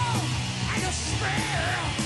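A live heavy metal band playing loudly: a steady low bass line underneath and a wavering high lead line that bends up and down in pitch on top.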